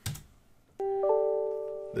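The Windows 10 'IM' toast notification sound: a short electronic chime of two notes, the second entering about a quarter second after the first, both ringing on and fading. A short click comes just before it.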